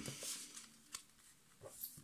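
Faint handling of a deck of oracle cards: a short papery rustle of cards sliding at the start, then a single light tap about a second in.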